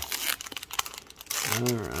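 Foil trading-card pack wrapper crinkling as it is pulled open by hand, a quick run of sharp crackles. A voice says "all right" near the end.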